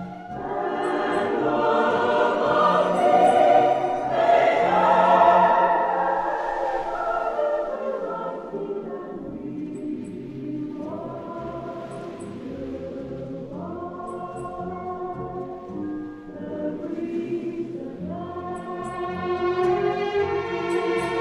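A choir singing with orchestral accompaniment in a slow, romantic easy-listening arrangement. It swells loudest a few seconds in, softens through the middle and builds again near the end.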